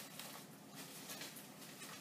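Faint rustling of plastic-bagged malt being handled and lifted out of a cardboard box, over low room tone.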